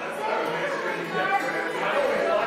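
Celtic jam-session music on acoustic string instruments, guitars and fiddle, mixed with the chatter of people talking in the room.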